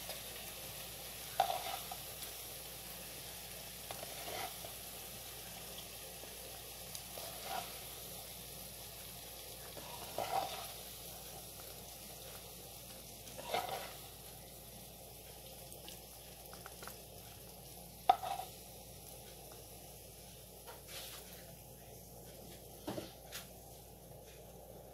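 Faint steady sizzle of hot sauce-glazed fried chicken, with a short clack of metal tongs against the glass serving plate and the pan every few seconds as pieces are lifted across.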